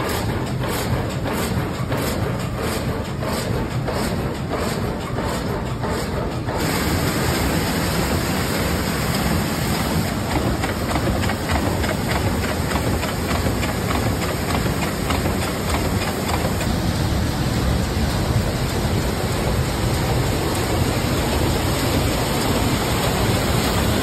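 Water-powered sawmill machinery running: a steady clatter with a regular knock about twice a second, giving way about six seconds in to a denser, hissier rushing noise.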